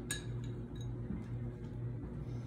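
A metal spoon clinks once against a ceramic bowl as it scoops graham cracker crumbs, a sharp ringing tap just after the start, over a steady low hum.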